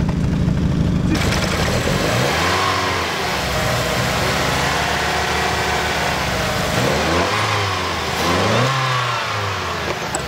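Mazda Miata inline-four engine, just brought back after its fuel injectors were cleaned. It idles steadily at the tailpipe for about the first second, then is revved by hand at the throttle, the revs rising and falling in several slow swells. It runs shaky at idle and does not like to idle.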